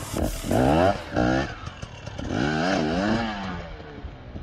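Two-stroke dirt bike engine revving in two bursts of throttle, the pitch rising and falling, the second burst about two seconds in.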